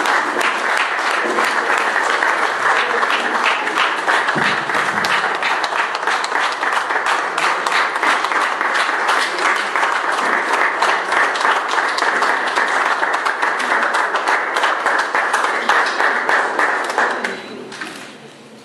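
Audience applauding after a live performance: dense, steady clapping that dies away near the end.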